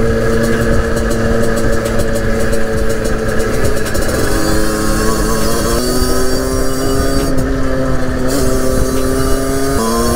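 A 50cc two-stroke motorcycle engine held at high revs on the move. Its pitch steps up about four and six seconds in and again near the end. Heavy wind rumble on the microphone runs underneath.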